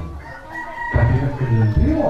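A rooster crowing in the background, one drawn-out call in the first second, followed by a man's voice.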